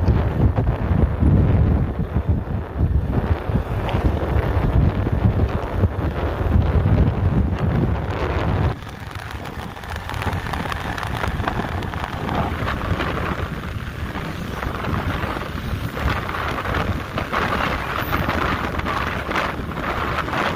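Wind buffeting the microphone of a moving vehicle, with road noise underneath: a gusty low rumble that eases off and thins out about nine seconds in.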